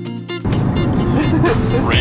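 Guitar music that cuts off about half a second in, giving way to the steady low rumble of a car driving, heard from inside the cabin.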